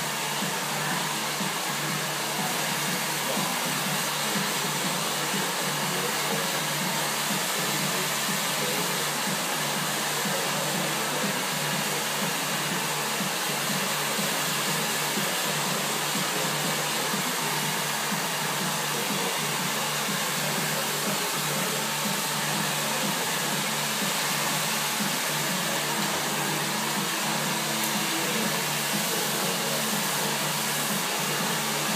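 Hair dryer running steadily, an unbroken airy whoosh.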